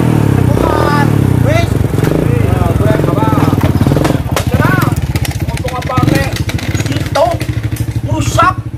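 Small step-through underbone motorcycle engine running as the bike pulls away with two aboard, with voices over it.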